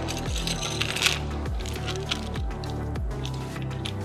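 Background music with a steady beat, over small plastic parts being shaken out of a plastic bag and clinking onto the bench in the first second or so.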